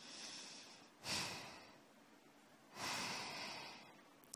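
A person breathing close to the microphone: a soft breath, then two louder breaths about a second and three quarters apart, each starting abruptly and fading over most of a second.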